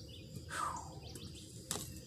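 Faint outdoor ambience with one short, falling bird call about half a second in and a single sharp click near the end.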